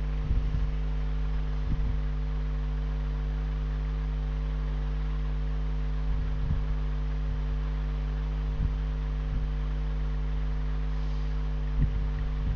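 Steady electrical mains hum in the recording, with a few soft low thumps scattered through it.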